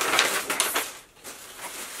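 Paper mailer bag and garment packaging rustling and crinkling as a dress is pulled out, dying down about a second in.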